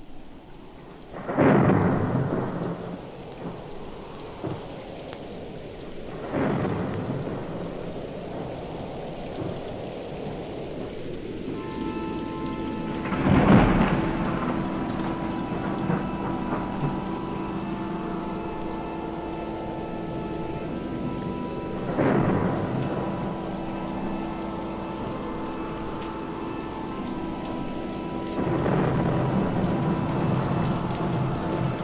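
Recorded thunderstorm sound effect in a studio album track: rain with five rolling claps of thunder, the loudest about a third of the way in. From about twelve seconds in, a sustained chord of held notes sounds beneath the storm.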